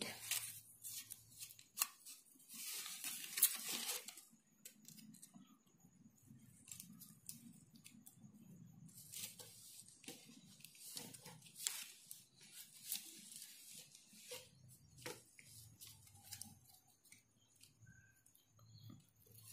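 Paper rustling and tearing as small torn pieces of paper are handled and pressed down by fingers onto a glued sheet. Faint, dry and intermittent, loudest about three seconds in and again about nine to ten seconds in.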